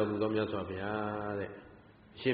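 A man's voice intoning a phrase in a chanting tone, holding one steady note for about a second before trailing off near the end.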